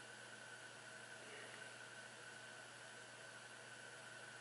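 Near silence: a faint steady hiss of room tone with a thin, constant high whine.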